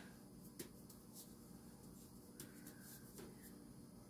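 Near silence: quiet room tone with a few faint, soft ticks from hands handling sourdough bread dough.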